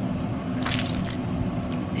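Water and wet rice squishing and sloshing in a plastic zip-top bag as it is lifted and handled, over a steady low hum.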